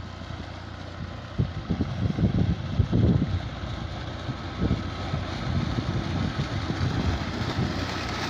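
Tractor engine running steadily, driving a shaft-driven irrigation water pump. The pump's outlet pipe pours a heavy jet of water that splashes into the channel with a continuous rushing noise.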